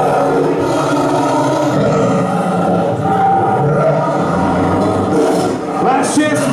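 A live progressive metal band playing loudly: distorted electric guitars, bass and drums in a dense, continuous wall of sound.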